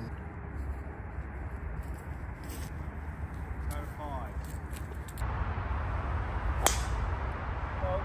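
A golf club striking the ball on a tee shot: one sharp crack about two-thirds of the way through.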